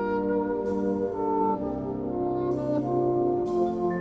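Military concert wind band playing a slow ballad, an alto saxophone solo over held brass chords. Three high ringing strokes come through, about a second in, halfway through and near the end.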